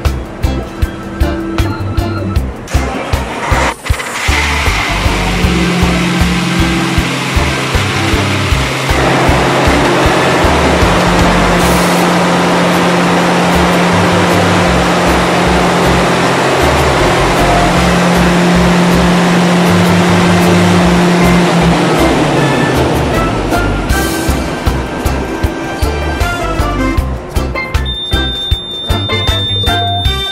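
Ship's emergency generator diesel engine starting sharply about four seconds in and running loudly, easing off about twenty seconds later. Background music with a steady beat plays throughout.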